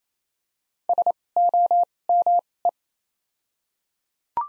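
Computer-generated Morse code tone sending the word "SOME" at 28 wpm, about a second in: three short dits, three longer dahs, two dahs, then a single dit, as one steady beep keyed on and off.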